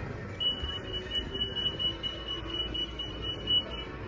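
A steady, high-pitched electronic tone, held for about three and a half seconds and then cut off, over a low background hum.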